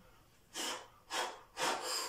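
A man breathing hard, three short forceful breaths about half a second apart, while holding a log bar racked at his chest between log push-press reps.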